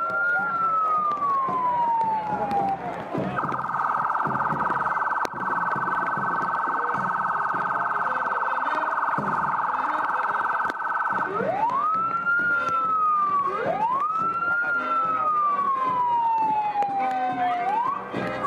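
Electronic vehicle siren on the lead SUV. It starts with a wail that rises quickly and falls slowly, switches a few seconds in to a rapid warble for about eight seconds, then goes back to wailing, with two more sweeps near the end.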